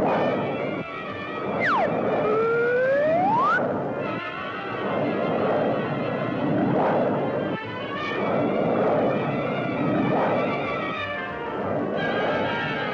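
Cartoon background music with a whistle-like glide that drops sharply and then slides upward, about two to three seconds in. Under it, a rushing sound swells and fades roughly every second and a half.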